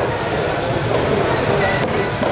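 Steady din of a busy fish market, with background voices and a low rumble, and a few faint strokes of a large knife working the scales off a parrotfish on a wooden block.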